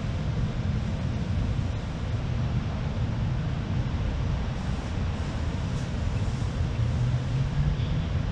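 Steady low rumble of outdoor background noise with no distinct calls or other events.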